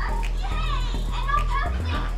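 Children's voices and chatter over background music.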